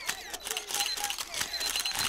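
Many camera shutters clicking rapidly and overlapping: a pack of press photographers shooting at once.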